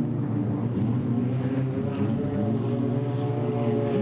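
Sprint car engines running hard at a steady, even pitch as the cars lap a dirt speedway oval. The field runs Holden V6 engines.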